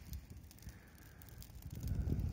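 Faint crackling of a small fire burning in a pile of dry leaves and brush twigs, with a low rumble that grows a little louder near the end.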